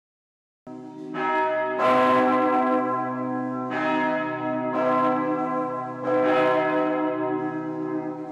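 Church bells struck several times, a second or two apart, each stroke ringing on over the last.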